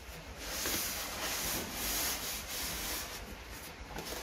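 Cardboard box flaps and inner cardboard lid rubbing and scraping against each other as the box is opened by hand. A continuous papery scraping starts about half a second in and comes in small surges.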